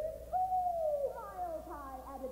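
Orchestral music in a quiet passage: a single pitch slides upward and holds, then drops about a second in, followed by several overlapping slides falling in pitch.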